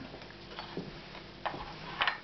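Light clicks of a small clay teapot's lid being handled on the pot, a faint one before the one-second mark and a sharper one about one and a half seconds in.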